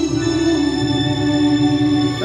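A man singing one long held note into a microphone with an echo effect, over backing music.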